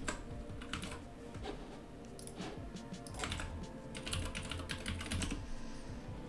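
Computer keyboard typing: quiet, scattered and irregular keystrokes.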